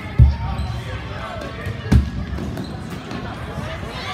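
Two loud thumps of a soccer ball being struck on a gym floor, about two seconds apart, the first just after the start. Voices call and chatter throughout in the hall.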